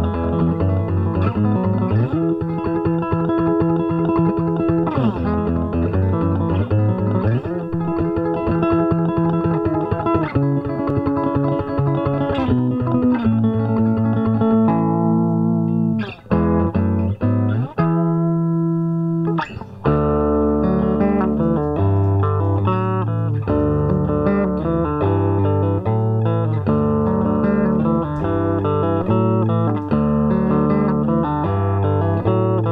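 Five-string Esquire electric guitar played through an amp into an Ampeg 8x10 cabinet, picking a riff with fast repeated strokes on held notes and sliding up and down the neck. About halfway through the playing breaks off briefly twice, then carries on in a choppier pattern of shorter notes.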